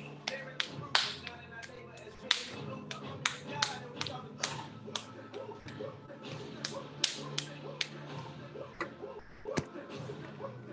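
Freshly wedged wet clay being slapped back and forth between the hands to form a ball for throwing: a run of sharp, irregular pats, about three a second.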